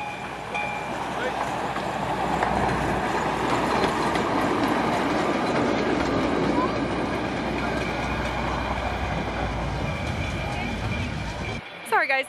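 Small ride-on miniature train rolling past on its track, a steady rumble and rattle of wheels on the rails that grows louder as it draws level.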